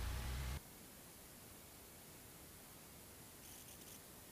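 Low steady hum of a Cessna 172's four-cylinder engine, heard through the cockpit audio feed, cuts off abruptly about half a second in. After that only a faint steady hiss of the audio line remains.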